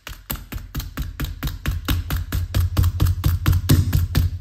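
Hammer tapping rapidly and evenly, about six or seven blows a second with a dull thud to each, pulling on a duct tape strap stuck to a laminate floor plank to knock the plank over and close a gap between boards.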